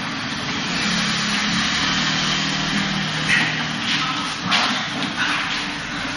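Steady hiss with a low hum in the first half. From about four seconds in come several sharp slaps and scuffs: arm-on-arm contact and footwork of two people sparring Wing Chun gor sau.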